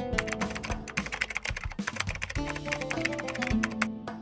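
Rapid keyboard-typing clicks used as a sound effect, over background music.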